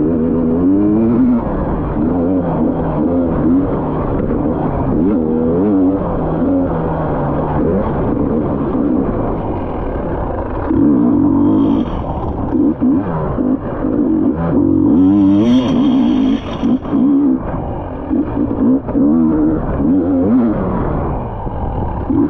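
Dirt bike engine revving up and down as the rider works the throttle through a tight trail, its pitch rising and falling with each burst of gas. The hardest, highest revs come about fifteen seconds in.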